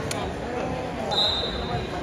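A referee's whistle blown once, a short steady high blast about a second in, over crowd chatter in a gym.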